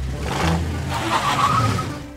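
Cartoon sound effect of a small car's engine running as it drives up, a steady engine hum with road noise that eases slightly near the end.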